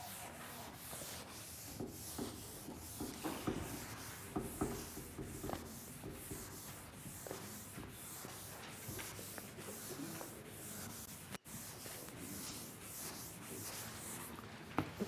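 Chalk blackboard being wiped with a handheld eraser in repeated sweeping strokes, with a couple of light knocks about four seconds in.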